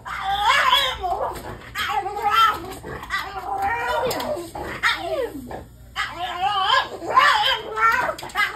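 French bulldog vocalizing in a string of wavering, whining yowls, each about half a second to a second long, several sliding down in pitch.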